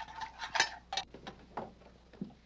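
A metal saucepan clinking and scraping against a glass jar as rose petal jam is poured into it: a run of light clinks and knocks, the sharpest about half a second in.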